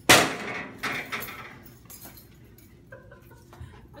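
A loud clattering crash of hard objects with a brief metallic ring, followed by two smaller knocks about a second in, as something is knocked over or slammed down in anger.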